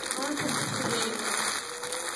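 A cardboard shipping box being handled and turned over in the hands, a steady scraping, noisy haze, with faint voices in the room behind it.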